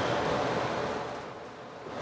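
Room and microphone noise: an even hiss with no distinct events, fading steadily toward the end.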